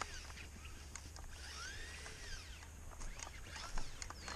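RC truck's brushed electric motor whining in short bursts, each rising and falling in pitch, as the wheels spin with the truck stuck in garden dirt, with scattered light clicks.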